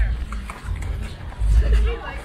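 Low rumbling buffets on the microphone of a camera carried while running, three times, over the footsteps and faint voices of a crowd of runners on a street.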